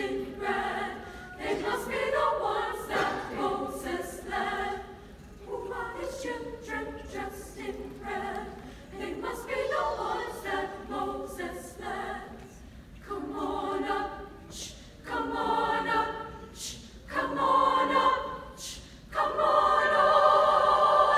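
Women's choir singing in short phrases with brief breaks between them, the last few phrases louder.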